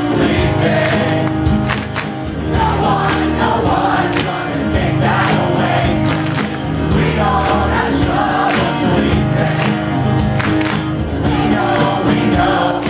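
A live band plays an acoustic rock song: strummed acoustic guitars, drums keeping a steady beat, and a sung lead vocal.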